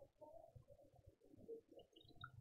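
Near silence: faint room tone with soft, indistinct background sounds.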